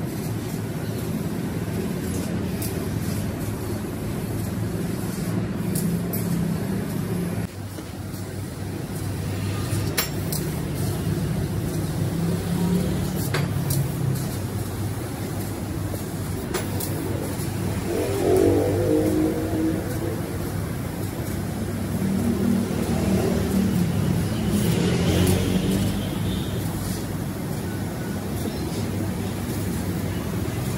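CNC laser cutting machine running as it cuts a pattern in steel sheet: a steady low mechanical drone with a few sharp clicks. The sound breaks off and changes abruptly about a quarter of the way in.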